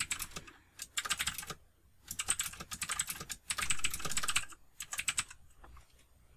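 Typing on a computer keyboard: rapid key clicks in several quick bursts with short pauses, stopping about five seconds in.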